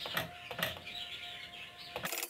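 Boiled, mashed potatoes tipped from a plastic container into a frying pan of onion and spice filling, giving two soft knocks and thuds, one just after the start and another about half a second in.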